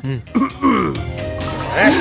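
A man's wordless vocal sounds over film background music.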